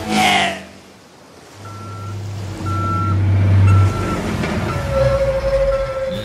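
Truck reversing beeper sounding a short beep about every two-thirds of a second over a low diesel engine rumble, starting about two seconds in; used as a cartoon sound effect.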